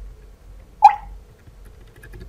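Faint computer keyboard keypresses as characters are deleted, with one short, loud sound about a second in whose pitch falls quickly.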